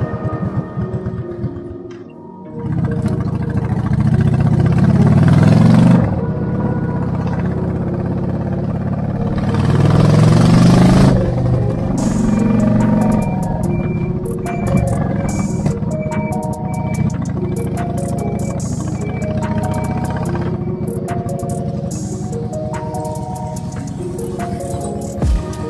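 Background music over a motorcycle engine, which rises in pitch as it accelerates about three seconds in and again about ten seconds in.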